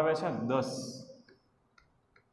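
A man's voice says "das" (ten), followed by two faint short clicks of chalk on a blackboard near the end.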